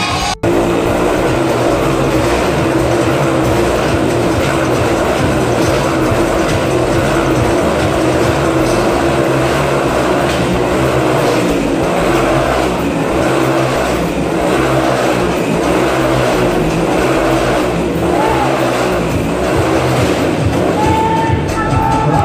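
Motorcycle engines running inside a steel-mesh globe of death, their pitch rising and falling over and over as the riders circle.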